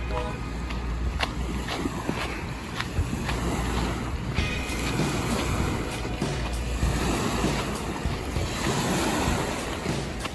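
Small lake waves lapping on a pebbly shore, with wind buffeting the microphone as a steady low rumble.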